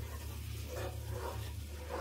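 Wooden spoon stirring and scraping flour into butter-softened onion and celery in a nonstick skillet, the first stirring of a roux, over a steady low hum.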